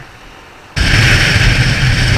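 A quiet moment, then wind rush on the microphone cuts in suddenly about three-quarters of a second in, over the steady low drone of a Honda CB650F's inline-four engine at highway speed.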